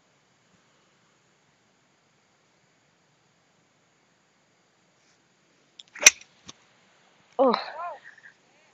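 A golf iron (a 7 iron) strikes a golf ball with one sharp click about six seconds in.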